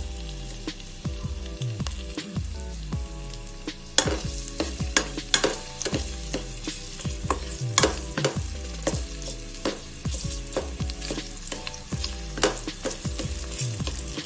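Chopped garlic sizzling in a little hot cooking oil in a stainless steel pot, with a spatula stirring and scraping against the pot, its sharp strokes coming thick from about four seconds in.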